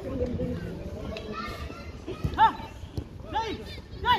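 Voices shouting and calling across an outdoor football pitch, with a few high-pitched rising-and-falling shouts past the halfway point and a short dull thud just before the first of them.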